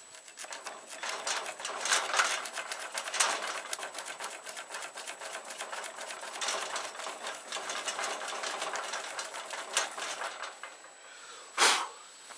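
A hand tool working steel: a fast, dense run of clicks and rasps for about ten seconds, which then stops. A single short, loud clatter follows near the end.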